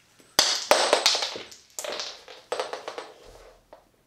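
Yo-yo and its 3D-printed counterweight knocking and clattering as a 5A counterweight trick goes wrong. A loud hit comes about half a second in, followed by several more knocks and rattles over the next two seconds, dying away.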